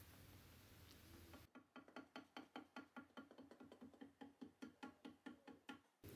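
Wooden paddle tapping a soft clay tube against a wooden board, a quick even run of knocks about five a second, beating the tube's curve into shape with a slightly flattened bottom.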